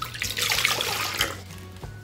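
One cup of milk pouring from a measuring cup into a mixing bowl, a splashing liquid stream that fades out about one and a half seconds in, over background music.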